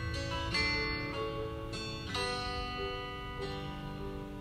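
Background music on a plucked string instrument, with new notes starting about every half second.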